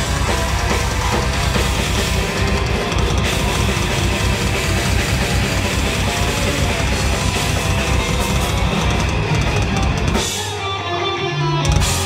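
Heavy metal band playing live and loud: distorted electric guitars, bass guitar and a drum kit. Near the end the drums and bass drop out for about a second and a half, then the full band comes back in with a loud hit.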